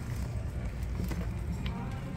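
A few light clicks and knocks of goods being shifted in a plastic basket on a wire cart, over steady low store background noise.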